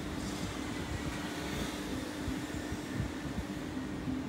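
Steady low mechanical hum over an uneven low rumble, with a faint even hiss higher up.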